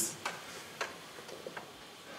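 A few faint, scattered clicks over quiet room tone, about three in two seconds.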